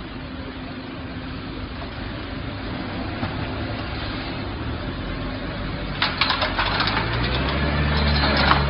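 Iveco crane truck's diesel engine running at the kerb over street noise, its low drone growing steadily louder and rising sharply near the end. About six seconds in, a run of sharp clicks and knocks begins.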